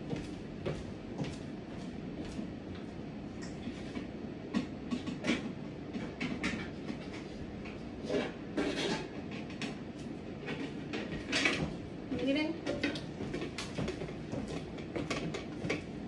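Scattered knocks and clinks of aluminium cooking pots being gathered and stacked off-camera, over a steady low background hum, with a faint voice briefly near the middle.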